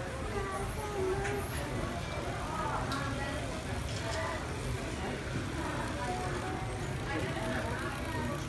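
Indistinct chatter of many people at once, a steady hubbub of overlapping voices with no clear words.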